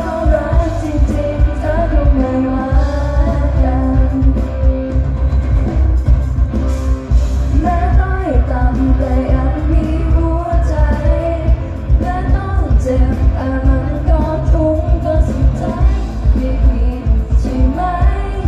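Live pop music from a concert stage: singers singing over a full band through a loud PA, with heavy bass and a steady drum beat, heard from within the audience.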